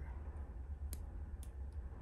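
Two light clicks about half a second apart, then a fainter third, from small metal RC helicopter tail parts being handled and pushed together with a driver, over a low steady hum.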